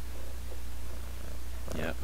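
Young long-haired domestic cat purring close to the microphone, a steady low rumble. Speech begins near the end.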